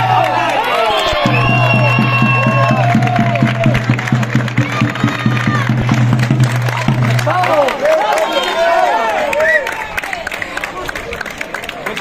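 Traditional folk music for a stick dance: a drum beating evenly over a steady low drone, with crowd voices throughout. The drone and the drumming stop about seven and a half seconds in, and voices and chatter carry on.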